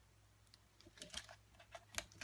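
Faint small clicks and crinkles of a paper pouch of foam adhesive dimensionals being handled, starting about a second in, with a sharper click near the end.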